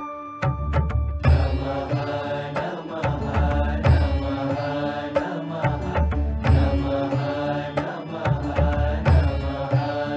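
Indian devotional music with chanting over a steady, regular drum beat; the fuller music comes in about a second in.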